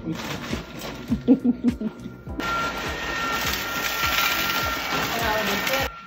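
Electric ice cream maker's motor running on its canister in a bucket of ice: a steady whine with a hiss that starts about two and a half seconds in and cuts off just before the end.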